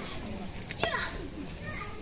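Faint voices in the background, with a brief soft click a little under a second in.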